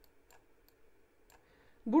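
Faint, scattered clicks of a computer pointing device while a formula is handwritten on screen, four or five in all. A man's voice starts near the end.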